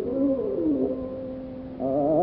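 Carnatic ragamalika from an old mono recording: a soft melodic phrase glides and settles on a long held note, then a louder line with rapid oscillating ornaments (gamakas) comes in near the end.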